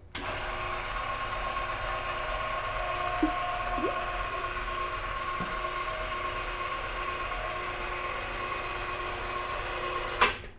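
Electric chain hoist running as it lowers a gas cylinder: a steady motor hum with a gear whine that starts abruptly and runs without a break, with a few brief squeaks in the middle.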